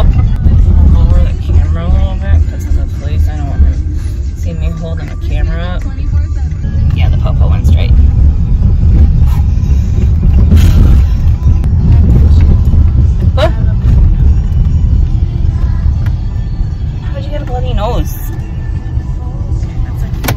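Steady low rumble of a car driving, heard from inside the cabin, with voices and music over it at times.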